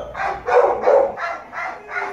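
A dog barking in a quick run of short, high barks, about four a second.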